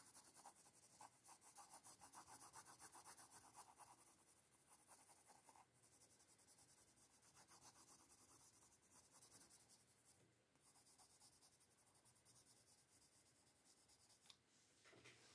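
Faint pencil strokes on paper: quick back-and-forth shading strokes in runs, thinning to a few scattered strokes over the last few seconds.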